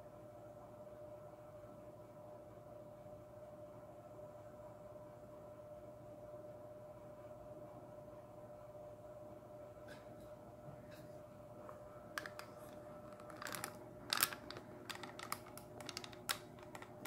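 Faint steady hum with a thin steady tone, then in the last few seconds a string of sharp clicks and knocks from the camera being bumped and moved.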